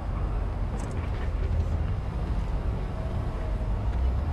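Steady low rumble of outdoor crowd ambience and wind on a GoPro's microphone, with a couple of faint ticks about a second in.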